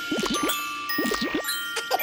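Cartoon sound effects: bright chime dings that ring on as steady high tones, with several short swooping blips beneath them, marking sunscreen being dabbed onto a face.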